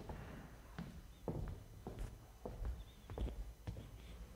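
Faint, irregular footsteps and light knocks, about one every half second to second, as people move about and sit down.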